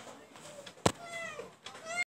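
A single sharp click, then two faint high-pitched calls, the first falling in pitch and the second rising near the end.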